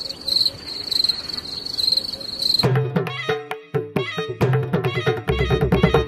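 A steady, pulsing high insect trill, like a cricket, over faint hiss. It cuts off about two and a half seconds in, when background music with a quick, dense percussive beat starts.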